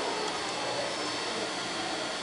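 Steady, even background hiss of room noise, with faint far-off voices near the start.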